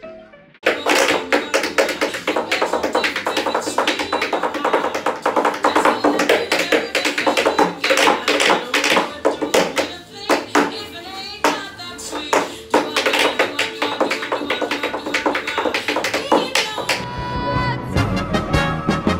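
Tap shoes striking a portable tap board in fast, dense rhythms over a swing jazz song, starting about a second in. The tapping stops near the end as the music changes to held notes.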